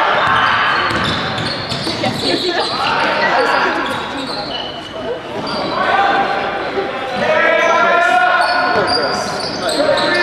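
Basketball game in a large echoing sports hall: a basketball being dribbled, sneakers squeaking in short high-pitched chirps on the wooden court, and players' voices calling out.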